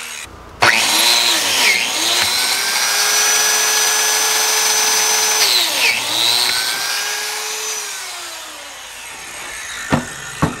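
Plate joiner (biscuit joiner) motor starting suddenly with a whine and cutting biscuit slots in a barnwood board; its pitch dips twice as the blade takes the cut, then winds down slowly over the last few seconds. A sharp knock comes near the end.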